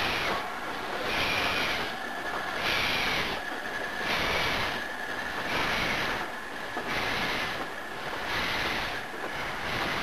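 Steam locomotive exhaust beats, slow and regular at roughly one heavy chuff a second, with a faint steady high tone underneath.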